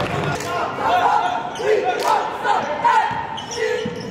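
Basketball bouncing on a hardwood gym floor, a few sharp irregular bounces, with voices of players and spectators in the gym.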